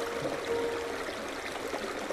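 Running stream water with a steady rush. Soft held notes of relaxation music fade out in the first second.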